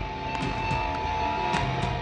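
Live metal band playing loud through the PA, electric guitars sustaining with a few sharp drum or cymbal hits and no vocals.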